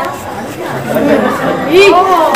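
A group of children chattering and calling out together. Near the end a loud shout of "aa" rises and falls in pitch.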